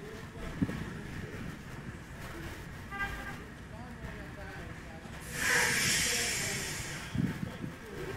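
Opening audio of a rap music video playing back: faint voices, then a loud rushing hiss from about five to seven seconds in.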